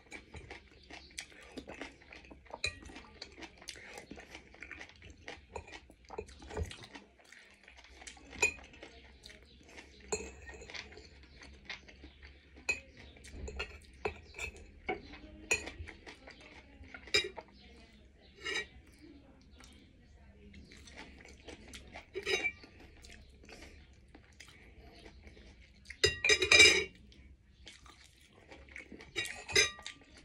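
Metal spoon and fork clinking and scraping against a ceramic soup bowl in scattered light clicks, with one louder clatter lasting about a second near the end.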